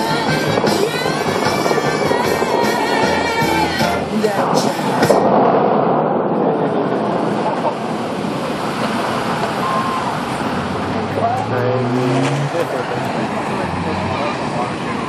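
Music from the show's loudspeakers plays until about five seconds in, when the Bellagio fountain's jets shoot up with a loud rush of water. After that comes a steady hiss of falling spray with people talking.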